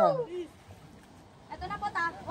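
People's voices: a phrase trailing off with falling pitch at the start, about a second of lull with a faint outdoor hiss, then a high, wavering voice near the end.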